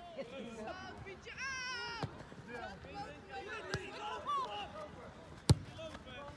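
Players and spectators calling out across a soccer pitch, with one high-pitched shout about a second and a half in. A single sharp thump about five and a half seconds in is the loudest sound.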